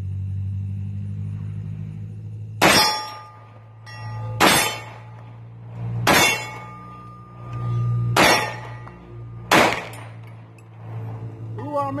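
Five 9mm pistol shots from a Hi-Point C9, spaced about one and a half to two seconds apart, several followed by the ring of a steel plate being hit. One of the five misses the plate.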